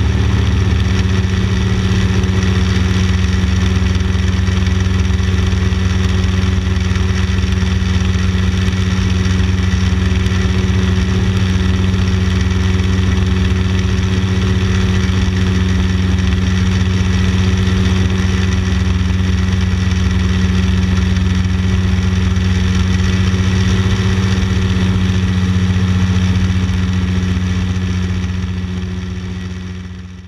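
X-Air microlight's engine and propeller running steadily in flight, a loud, even drone with no change in pitch. It fades out over the last couple of seconds.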